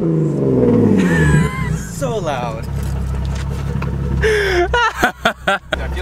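Nissan 370Z's V6 engine falling back from a held two-step rev, the revs dropping away over about a second and a half and settling into a steady idle.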